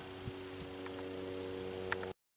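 A steady low hum made of several even tones, with a few faint clicks near the end.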